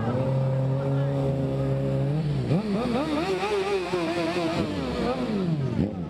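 A vehicle engine held at a steady pitch, then revved up sharply a couple of seconds in, held high with some wavering, and let fall back near the end.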